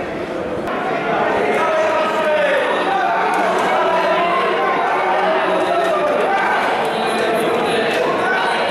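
A horse-race commentator calling the race over loudspeakers, with crowd voices underneath.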